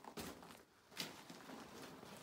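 Footsteps crunching on a loose gravel and rubble mine floor: two sharper steps about a second apart, with faint scuffing between.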